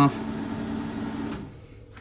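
Range hood exhaust fan running with a steady whir and low hum, then switched off with a button click about one and a half seconds in.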